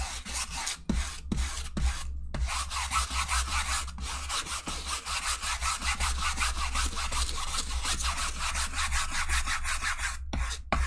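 Wide flat paintbrush scrubbing over canvas as it spreads a gel oil-painting medium, the bristles making a scratchy rubbing sound. A few separate strokes at first, then quick back-and-forth scrubbing with no pauses from a couple of seconds in.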